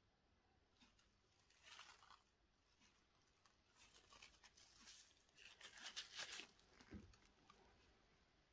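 Mostly near silence, broken by faint rustling and crinkling handling noises, strongest about six seconds in, and a soft knock about a second before the end.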